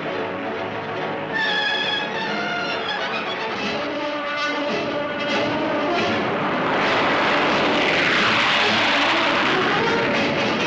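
Orchestral film-score music, with the rushing noise of a jet bomber's engines swelling in over the last few seconds as it takes off, loudest near the end.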